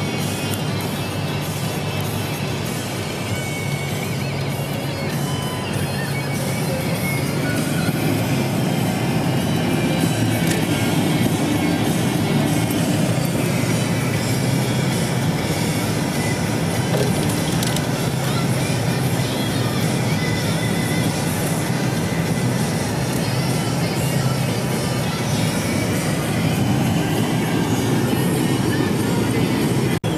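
Music playing on a car radio inside the cabin, over the steady engine and road noise of the car driving on snowy streets.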